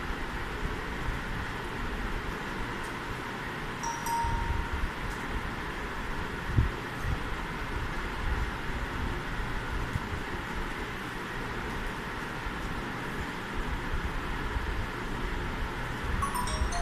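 Steady background noise with a low, uneven rumble. A short chime-like tone sounds about four seconds in, and a single knock comes a couple of seconds later.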